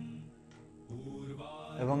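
Soft background music with a steady low drone, in a devotional, mantra-like style. A man's voice comes back in near the end.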